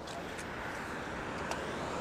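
Steady road traffic noise from passing cars, swelling slightly towards the end.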